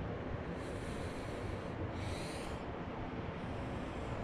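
Low, steady outdoor background noise with three soft breaths close to the microphone.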